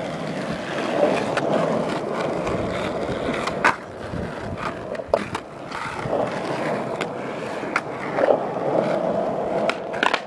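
Skateboard wheels rolling steadily over rough asphalt, broken by several sharp clacks of the board popping and landing during a line of tricks, the loudest about four seconds in.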